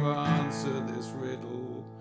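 Acoustic guitar strummed in standard tuning without a capo, moving to a new chord about a quarter-second in, then left to ring and fade away near the end.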